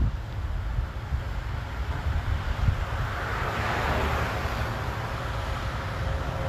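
A vehicle passing on the road, its tyre and road noise swelling to a peak around the middle and then easing off, over a steady low rumble of wind on the microphone.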